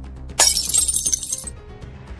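Glass-shattering sound effect: a sudden crash about half a second in that fades out after about a second, laid over a low sustained music bed.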